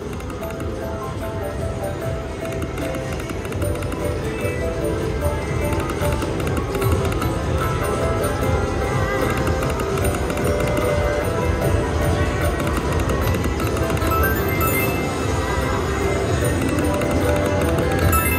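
Video slot machine's game music and reel-spin jingles as it plays spin after spin, over continuous casino-floor noise.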